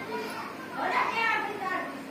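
A child's high voice calling out for about a second, starting roughly a second in.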